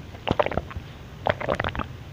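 Close-miked drinking through a straw from a juice carton: sips and wet swallowing gulps in two short clusters about a second apart.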